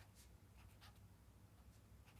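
Faint scratching of writing on paper: short strokes, one every half second or so, over a low steady hum.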